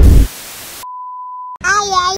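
Edited-in sound effects: a loud burst of noise ends, then a short hiss of static, then a steady beep at about 1 kHz lasting under a second, and a voice starts straight after it.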